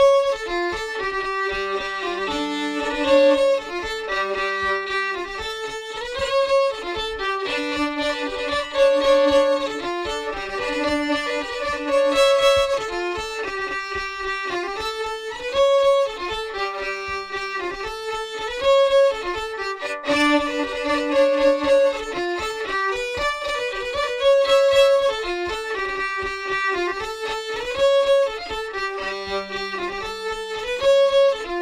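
Solo fiddle playing a fast Estonian labajalg (flat-foot) dance tune in a steady three-beat, with all beats equal. It is a short repeating melody in G Lydian dominant, with a low drone note sounding under it now and then.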